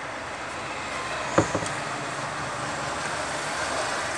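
Steady background noise with two quick light knocks close together about a second and a half in, as the graph-paper notebook is handled to go to the next page.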